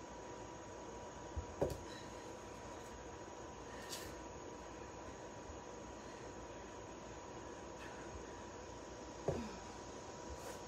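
Quiet garage room tone: a steady faint hiss with a thin steady tone, broken twice by a brief sound that drops quickly in pitch, once under two seconds in and once near the end, as a kettlebell is rowed and then set down.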